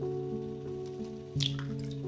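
Background music with steady held notes. Over it, about one and a half seconds in, a short crack and a wet drop as a chicken egg is broken into a glass bowl.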